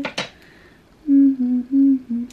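A woman humming a tune in three short held notes, high, low, high, starting about a second in. A brief breathy sound comes before it, right at the start.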